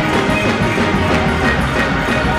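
Loud live gospel praise-break music: a fast, driving drum beat under sustained keyboard chords.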